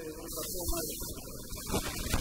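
A man's voice drawing out a long, humming vowel with a gently wavering pitch for about the first second, then rougher, noisier voice sounds near the end.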